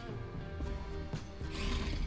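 Small electric gear motors of a toy robot car whirring in short spurts as it is driven by remote control, over steady background music.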